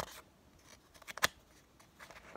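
A picture-book page being handled and turned by hand: a few crisp paper clicks and snaps about a second in, otherwise quiet.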